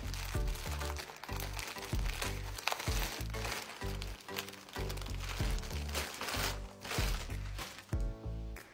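Crinkling and rustling of a blue plastic poly mailer bag being torn open by hand, over background music with a steady beat.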